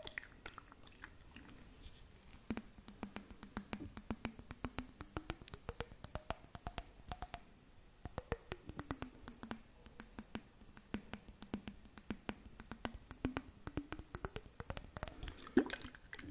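Long fingernails tapping and clicking rapidly on a jar of blue glitter-filled liquid held close to the microphone, in quick runs of sharp taps. Under the taps a low ringing tone slowly slides up and down as the jar is turned.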